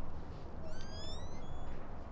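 A bird gives a single rising call, a little under a second long, near the middle, over a steady low rumble of outdoor background noise.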